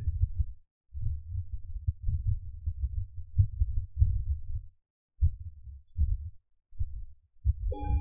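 Low, irregular muffled thumps and rumbling throughout. Near the end a singing bowl is struck once and rings on with a steady tone, marking the close of the meditation sitting.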